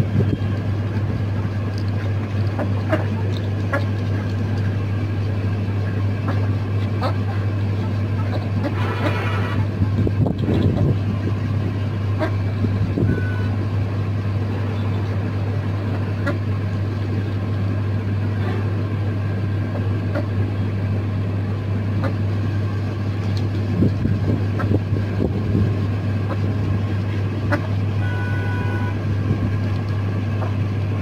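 Ducks and chickens pecking and dabbling at chopped greens and vegetables on a plastic tarp, heard as scattered short clicks and pecks over a steady low hum.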